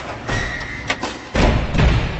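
Cinematic logo-intro sound effects: a run of deep impact hits with swooshes, the two heaviest in the second half and a sharp click near the middle.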